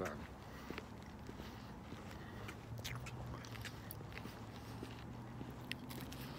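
Faint chewing of a Butterfinger candy bar, its crispy peanut-butter core giving scattered small crunches and mouth clicks. A low steady hum sets in about halfway through.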